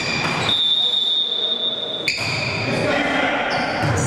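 Referee's whistle blown once, a steady high blast of about a second and a half, signalling the serve, followed by the smack of the volleyball being struck. Players' voices echo in the sports hall.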